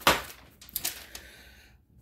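Paper crackling and rustling as a hand lifts a packing slip off crumpled packing paper in a cardboard shipping box: a sharp crackle at the start, then a few softer crinkles that die away.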